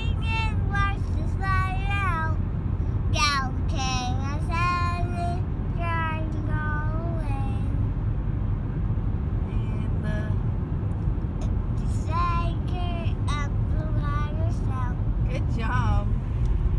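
A toddler singing in a high, wavering voice around a pacifier, in short phrases with a pause about halfway through, over the steady low road rumble inside a moving car.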